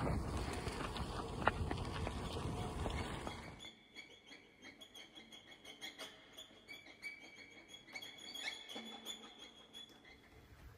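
Wind rushing over the microphone and tyres on a dirt track while cycling, a steady noise that stops abruptly a few seconds in. After it, a quiet outdoor background with faint, scattered bird chirps.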